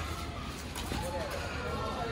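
Men's voices talking and calling in the background, with a sharp click a little under a second in: a badminton racket striking the shuttlecock.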